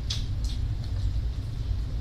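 Steady low background rumble, with a couple of faint short eating smacks about half a second in.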